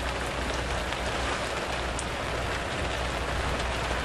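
Burning wooden camp structures crackling, with a steady rushing hiss and a constant low rumble.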